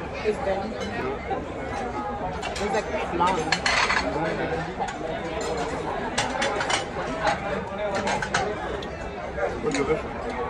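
Busy dining-room hubbub of many voices talking at once, with cutlery and dishes clinking several times.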